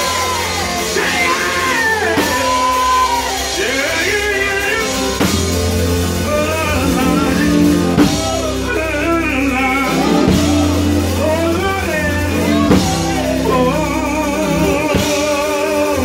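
Live old-school gospel singing: a male lead and backing singers over a band with drums and a steady bass line, ending on long held notes with a wide vibrato.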